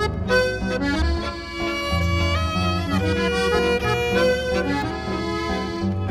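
Chromatic button accordion playing a melody in an instrumental passage of Viennese Schrammel music, over bass notes and chords from a contraguitar.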